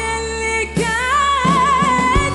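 A female singer performing an Arabic pop song with a live band, ending the phrase on a long held note with vibrato.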